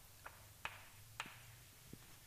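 Near silence with three faint, sharp clicks and a weaker low tap near the end.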